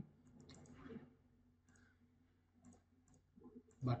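Faint computer mouse clicks, a handful spaced irregularly.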